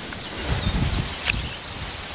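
Outdoor wind ambience: a steady hiss of wind through grass and leaves, with a low rumble of wind buffeting the microphone from about half a second in.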